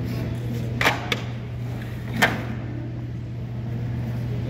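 A steady low hum with three short, sharp clicks: two close together about a second in, and one a little past two seconds.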